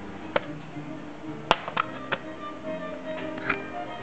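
Music playing, with a few sharp metallic clinks, most of them in the first half, as stripped-down engine parts are picked up and moved in a plastic parts tray.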